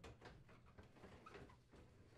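Near silence with a few faint light knocks and scuffs as a built-in microwave oven is slid into its cabinet opening.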